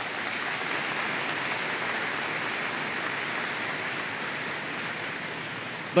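Large audience applauding steadily, easing off slightly toward the end.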